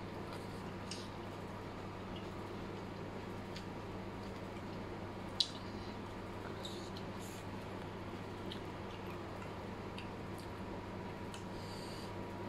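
Faint close-up chewing and mouth clicks from eating fried noodles with prawns and squid, with one sharper click about five seconds in, over a steady low hum.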